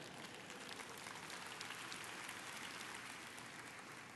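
Faint applause from a large congregation, a dense patter of many hands clapping that swells a little in the middle and fades toward the end.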